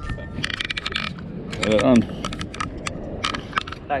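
Light clicking and clinking of small hard objects, coming in short clusters about a second apart.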